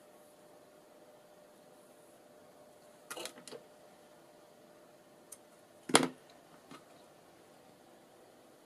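Small craft scissors snipping thread: a quick cluster of clicks about three seconds in, then a single louder clack about six seconds in, with a faint click after it.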